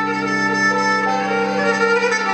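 Bowed pear-shaped folk fiddle, held upright, playing sustained melody notes over steady low drone notes, moving to a new note about a second in.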